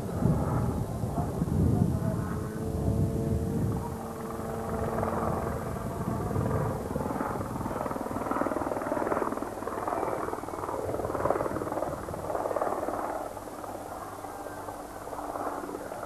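Helicopter flying a display overhead, its engine and rotors heard louder in the first few seconds, then dropping back as it moves away.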